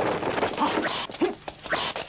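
Short, sharp vocal cries from fighters in a dubbed kung fu fight, two or three brief yelps with a quick bend in pitch, over a hissing old film soundtrack.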